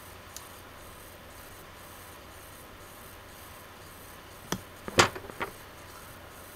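Steady faint room hiss, then a few sharp clicks and taps about four and a half to five and a half seconds in, the loudest near five seconds: drawing tools being picked up and handled on a desk.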